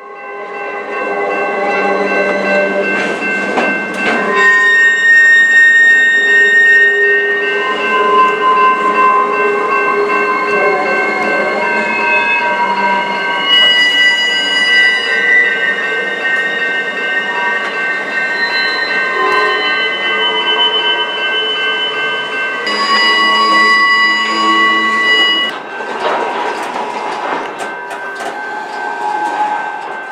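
Norfolk Southern work train of camp cars and track machines rolling past at close range. Its wheels squeal in several high, steady tones that come and go and shift over the rumble of the cars, with bursts of clicking near the start and again near the end.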